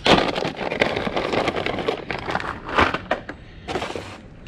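Plastic bag rustling and crinkling as a clutch assembly is pulled out of it by hand, a dense crackle that eases off about three seconds in.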